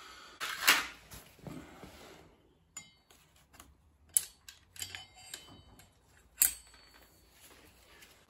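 Light metallic clicks and clinks as a long thin metal tool is poked into the open clutch basket and taps against its metal parts, fishing for a washer dropped into the engine. A few scattered clicks, one with a brief ring, after some handling rustle in the first two seconds.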